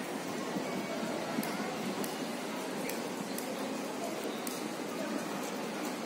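Steady outdoor ambience of a shopping-mall plaza: an even wash of background noise with faint, indistinct distant voices, and a few light ticks.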